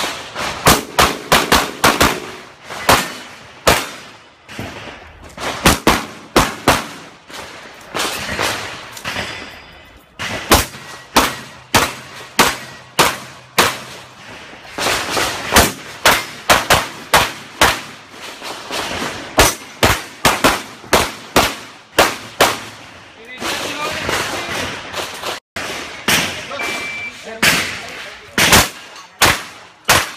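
Pistol shots fired in rapid strings, many as quick pairs, with short pauses between strings.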